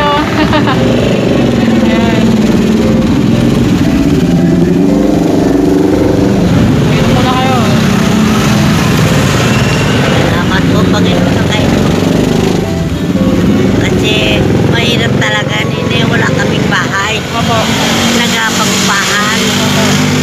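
Nearby street traffic: a motor vehicle engine running close by, a steady low hum that eases off in the lowest range about two-thirds of the way through, under an elderly woman's voice.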